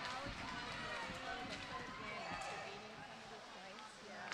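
Indistinct chatter of spectators talking close to the microphone, with a few sharp clacks of hockey sticks and puck on the ice.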